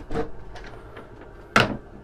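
Wooden cabin door worked by its metal lever handle: a latch click just after the start, then a louder, sharp knock about a second and a half in as the door swings open.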